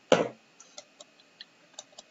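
A single cough-like burst just after the start, then a handful of faint, irregular light clicks from writing on a digital whiteboard.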